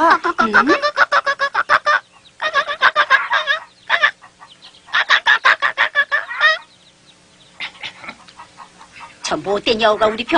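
Chickens clucking in rapid runs of cackling. There are three loud bursts, then softer, scattered clucks near the end.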